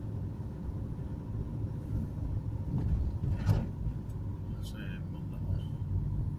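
Steady low rumble of a car driving on an asphalt road, heard from inside the cabin, with a brief sharper sound about halfway through.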